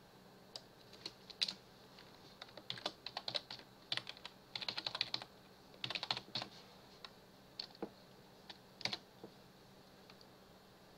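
Typing on a computer keyboard. A few single key presses come first, then quick runs of keystrokes in the middle, then a few scattered presses.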